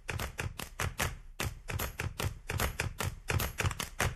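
A rapid, uneven run of sharp taps or clicks, about five or six a second.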